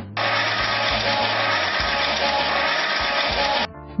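A steady rushing hiss that starts abruptly and cuts off sharply about three and a half seconds later, over light background music.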